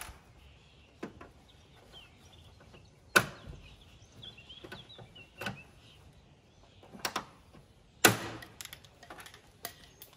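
A handful of sharp clicks and knocks from hand tools working pop rivets into the steel rear flap of a Land Rover, spaced a second or two apart. The two loudest snaps come about three and eight seconds in.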